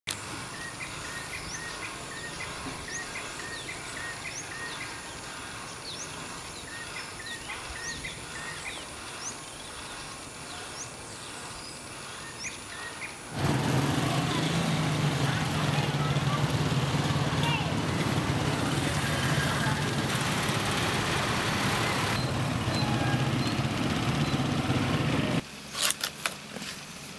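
Outdoor ambience with birds chirping repeatedly in short rising calls. About halfway through, it changes abruptly to a much louder steady noise with a low hum, which cuts off again shortly before the end.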